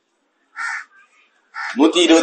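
A single short, harsh bird call about half a second in, in a pause between stretches of a man's speech.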